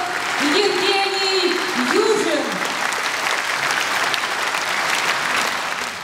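Concert audience applauding steadily, with a voice heard over the clapping in the first couple of seconds.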